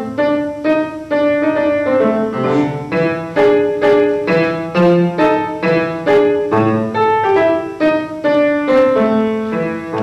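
Instrumental piano music, a steady run of struck notes at about two a second, each one starting sharply and then fading.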